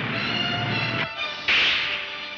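Orchestral trailer music with a low rumble, which breaks off about a second in. Then, about a second and a half in, a sudden loud swish sound effect, a sword being swung.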